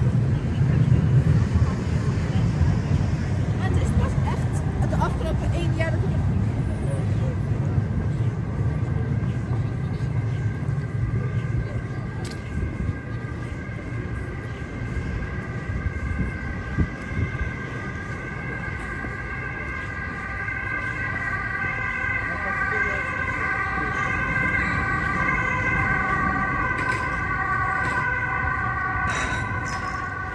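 City street ambience with a low traffic rumble. From about halfway through, an emergency-vehicle siren comes in and grows louder toward the end.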